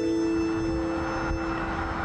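Held notes of background music fade out while the rushing whoosh of a passing car swells.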